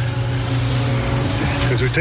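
An engine idling steadily, a low even hum. A man's voice starts again near the end.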